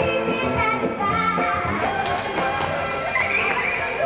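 Upbeat music playing, with a melody of changing notes over a regular beat.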